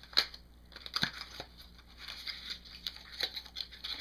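Cardboard cosmetics packaging being handled: a MAC Fluidline box slid out of its sleeve and opened, with light rustling and scraping and a few sharp clicks in the first second and a half.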